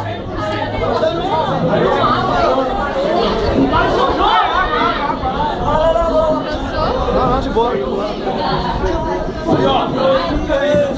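Overlapping chatter from many people talking at once in a crowded room, no single voice standing out.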